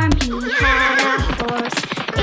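A horse whinnying, one wavering neigh about half a second in, over children's song music with a steady beat.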